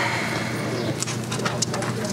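Meeting-room background noise: a steady low hum with irregular small clicks and knocks, mostly in the second half, as people settle in their seats.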